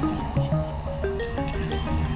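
Experimental electronic synthesizer music: a fast run of short notes hopping up and down in pitch over a dense, steady low drone.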